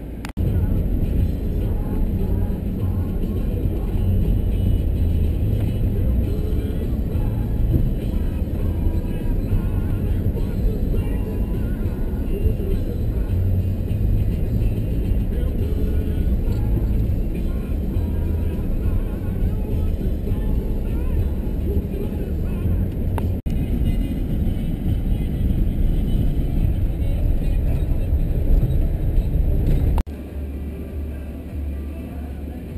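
Steady low rumble of a vehicle driving on a gravel forest road, heard from inside the cabin: tyre and engine noise.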